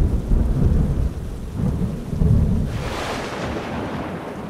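Thunder rumbling low and rolling, then a hiss of rain that swells about three seconds in.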